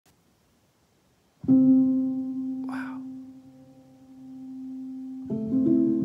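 Sampled felt piano (Spectrasonics Keyscape virtual instrument) played from a keyboard: a single soft, muted note sounds about a second and a half in and is held as it fades, with a short hiss about a second later. Near the end, several more notes join to form a chord.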